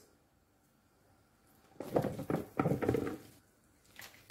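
Raw potato chunks tipped from a bowl into a non-stick pan of beef, landing in a quick run of knocks and thuds for about a second and a half, starting about two seconds in.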